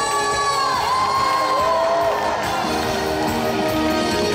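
Female trot singer holding long sung notes over live band backing. The melody steps down and the voice drops out about two seconds in, leaving the band playing on while the audience cheers.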